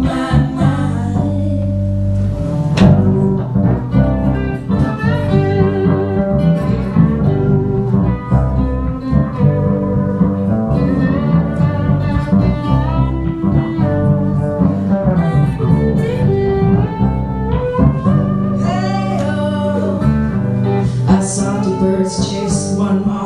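Live electric bass guitar and lap steel guitar playing together, the bass holding low notes under the lap steel's slide gliding between notes.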